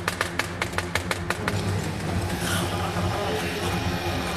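Knife chopping rapidly on a wooden cutting board, about six or seven strokes a second, stopping about a second and a half in; a steady low hum carries on underneath.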